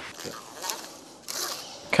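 Faint scraping of a steel bending spring being slid into 20 mm PVC conduit, with one short scrape and then a slightly longer one past the middle.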